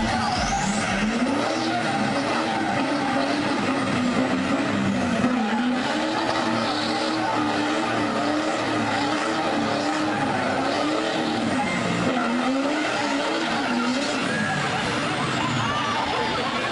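Chevrolet dually pickup's diesel engine held at high revs under heavy load, its pitch wavering up and down, while its rear tyres spin on the pavement towing against a semi truck.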